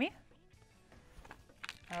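Near silence, then a few faint rustles and soft clicks near the end as a folded paper towel is handled and set down on the counter.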